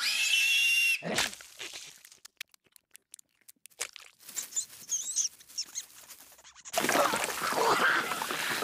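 Cartoon rat and gore sound effects: a sharp pitched squeal for about a second at the start, then scattered small wet smacks and high squeaks, and from near the end a loud gushing spray of blood.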